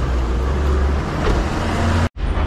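Small hatchback car's engine idling close by, a low steady rumble, with the front door being pulled shut about a second in.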